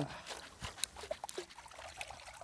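Faint water trickling and dripping as a wet fish trap is handled and drained at the water's edge, with a few small clicks.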